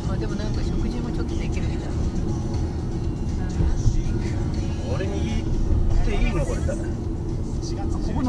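Steady low rumble of a car on the move, heard inside the cabin, with the car radio playing speech and music under it.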